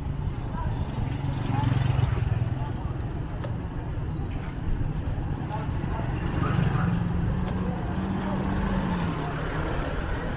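Small motorcycle and scooter engines passing close by on a street, a steady low hum that climbs in pitch about six seconds in as one accelerates past.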